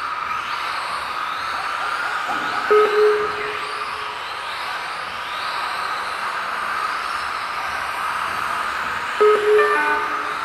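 Several Tamiya TT-02 electric RC touring cars' motors whining, their pitch sliding up and down over and over as they accelerate and brake around the track. Short electronic beeps sound about three seconds in and again near the end.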